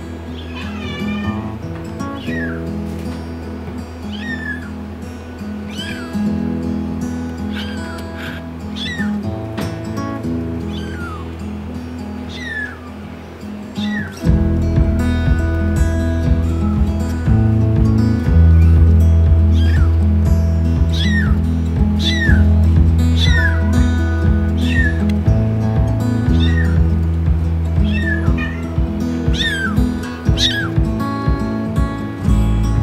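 Bengal kitten meowing over and over, short high calls that fall in pitch, every second or two. Background music plays underneath and grows louder, with a beat, about halfway through.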